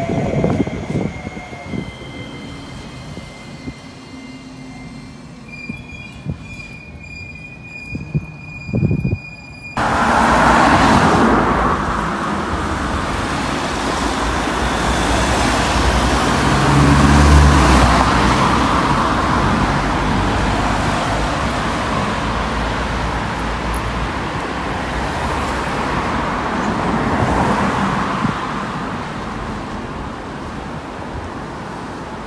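An electric tram moving along street rails with a faint high whine, one tone falling at the start. About ten seconds in it gives way abruptly to loud street traffic, cars passing with a steady rush, loudest with a low rumble around the middle.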